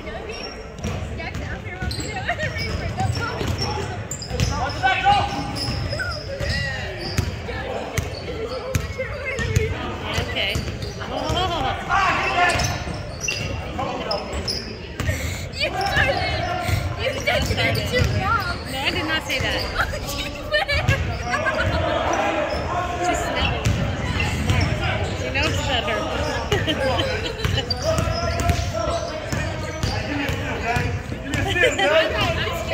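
Basketball bouncing and dribbling on a hardwood gym court during a game, with players' voices echoing around the large hall.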